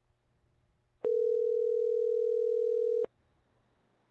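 Telephone ringback tone over the phone line: one steady ring tone lasting about two seconds while the called number rings.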